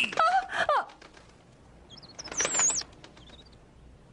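Bird calls: a gliding call in the first second, then a short, very high warbling chirp about two and a half seconds in.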